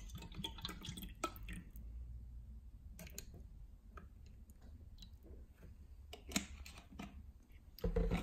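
Water poured from a plastic bottle into a clear plastic cup, then trickled into a small plastic cup, with a few light clicks and knocks, the sharpest a little after six seconds in.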